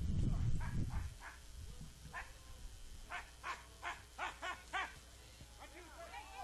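A dog barking repeatedly in short, sharp barks that come faster toward the end, after a low rumble in the first second.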